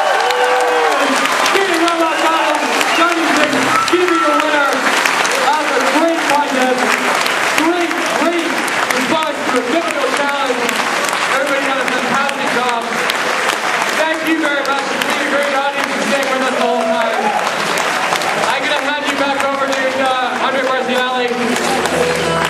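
Audience applauding, with many people talking and calling out over the clapping.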